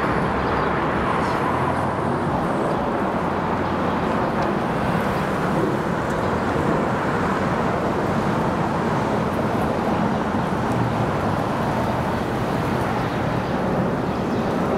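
City street traffic: cars passing on the street under the elevated rail line, a steady, unbroken rumble of engine and tyre noise.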